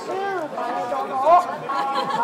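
A child's high voice declaiming kabuki dialogue in drawn-out phrases that swoop up and down in pitch, with held notes between them.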